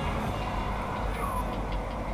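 Mountain bike riding over a rocky trail, heard through an action camera's own microphone: a steady low rumble of wind buffeting and tyre and frame noise, with a few faint short chirps.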